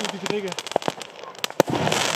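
Crackling stars from an Xplode 'Rap' category F2 firework battery going off in the air: a scatter of sharp crackles and pops, with one louder crack about one and a half seconds in.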